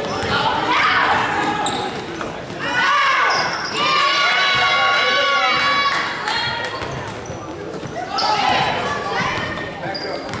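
Balls bouncing repeatedly on a hard floor, with people's voices, in a large echoing indoor hall.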